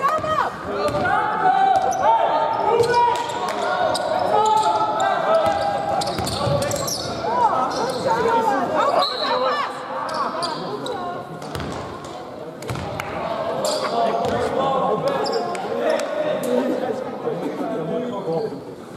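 A basketball bouncing on a sports-hall floor during play, with players' voices calling out, in the echo of a large hall.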